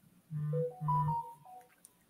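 A short electronic jingle of two held notes, each about half a second, with higher tones stepping in pitch over them.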